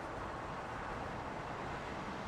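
Steady outdoor background noise: an even low rumble and hiss with no distinct events.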